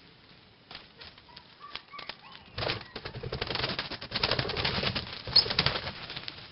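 Birds flapping their wings in a rapid fluttering run that starts about halfway through and goes on for about three seconds, after a few faint clicks.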